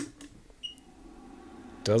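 ZD-915 desoldering station's mains power button clicking on, followed about half a second later by a short high beep as the station powers up.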